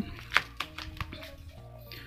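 Several sharp plastic clicks and taps, the loudest about a third of a second in, as a phone is handled into the spring-loaded clamp of a plastic neck-mounted phone holder.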